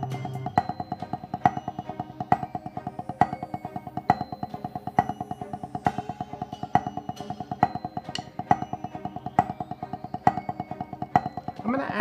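Drumsticks playing a fast, even rudiment on a rubber practice pad, each stroke a short pitched tap, with louder accented strokes recurring a little under once a second. The accents fall on beats one and three.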